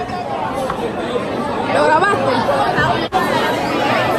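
Several voices talking and chattering over one another in a large room, with a sudden brief dropout about three seconds in.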